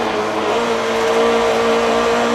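Rally car's engine heard from inside the cockpit, held at a steady pitch while the car is driven flat out through a bend.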